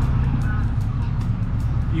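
Diesel engine of a heavy machine running steadily at a low, even pitch.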